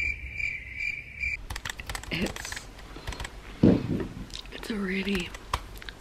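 A chirping like crickets, a pulsing high tone, for about the first second and a half. Then a run of small sharp clicks, with a few short hummed vocal sounds.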